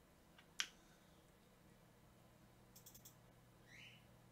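Near silence broken by a few sharp computer-mouse clicks: one loud click about half a second in, and a quick cluster of clicks near three seconds as a program shortcut is double-clicked open. A short faint rising sound follows near the end.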